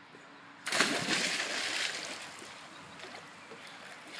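A child diving into a swimming pool: a sudden splash under a second in, followed by fading sloshing and splashing of the water as he swims breaststroke.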